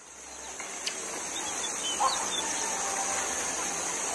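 Backyard ambience fading in: a steady high hiss, with small birds chirping and a chicken's brief cluck about two seconds in.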